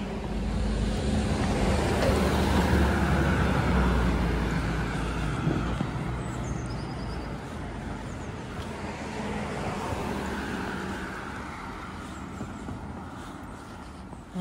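A motor vehicle driving past on the road, its engine and tyre noise growing louder over the first few seconds and then fading away slowly, with a fainter second pass near ten seconds.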